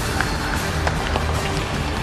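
Background music with steady sustained tones.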